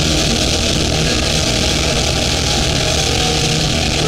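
Live hardcore punk band playing at full volume: distorted electric guitars, bass and drums in a dense, steady wall of sound.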